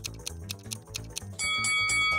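Background music with a quick, steady clock-like ticking, about four to five ticks a second, under a riddle's countdown timer. About 1.4 s in the ticking stops and a bell-like chime of several held tones rings out, marking that the thinking time is up.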